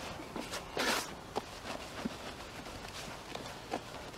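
Hands working groundbait in a plastic bucket: a rustling crunch about a second in, then a few short soft knocks and pats.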